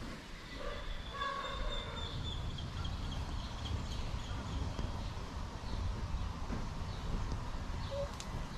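Outdoor ambience among trees: a steady low rumble with faint bird calls in the first few seconds.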